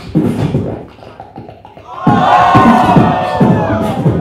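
Live beatboxing through a handheld microphone, with kick-and-snare patterns. About halfway through, a crowd breaks into loud screaming and cheering over the beat, which carries on underneath.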